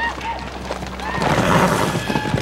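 Horses whinnying and hooves clattering on dirt, with short pitched cries about a second apart.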